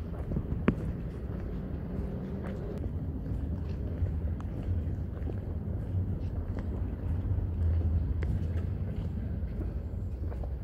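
Outdoor street ambience dominated by a steady low wind rumble on the microphone, with faint scattered ticks and one sharp click just under a second in.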